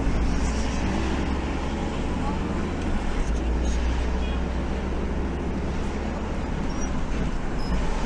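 Steady road noise heard from inside a moving car's cabin: a constant low rumble of engine and tyres with a haze of traffic noise over it.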